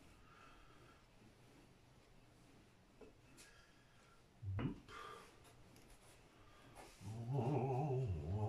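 A man humming a tune from about seven seconds in, the loudest sound, over the faint rolling of a wooden rolling pin across floured dough. About four and a half seconds in there is one short squeak that rises sharply in pitch.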